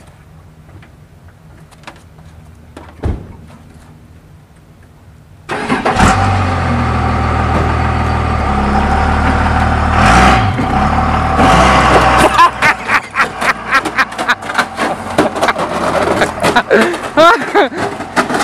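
Pickup truck engine starting about five seconds in and running, then the truck pulling away with a rapid clatter of sharp crunching and scraping noises. Voices come in near the end.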